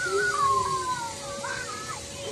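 A drawn-out, wavering vocal call that slides down in pitch over about a second, followed by a shorter call that rises and falls about one and a half seconds in.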